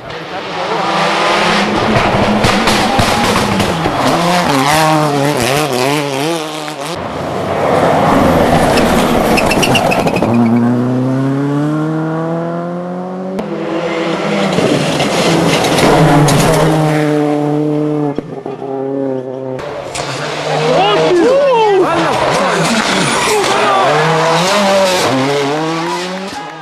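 Turbocharged four-cylinder World Rally Cars at full throttle on tarmac stages. The engines rev hard and shift through the gears, their pitch climbing and dropping as each car passes close by. Several separate passes are cut together, with abrupt changes about every six seconds.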